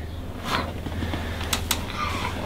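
Chiropractic adjustment of a spinal joint at the base of the neck: two quick sharp clicks in close succession about one and a half seconds in, the joint releasing under a thrust.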